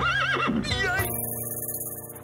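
Cartoon pony whinnying: a warbling neigh, then a shorter falling one just after, over background music that carries on with held notes.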